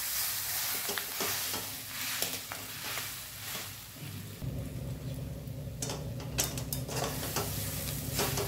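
A metal spatula scrapes and turns gram-flour-coated capsicum in a metal kadhai, with repeated scraping clicks over the sizzle of frying oil. A low steady hum joins about halfway through.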